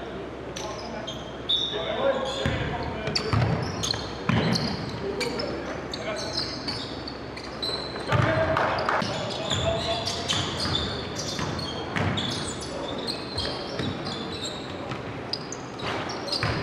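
Basketball bouncing on a hardwood gym floor during play, a series of thuds that echo in the large gym, with players' voices around it.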